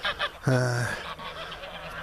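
A flock of domestic grey geese honking and calling, with one longer, louder call about half a second in.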